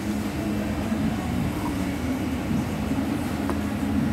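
A steady, low mechanical drone.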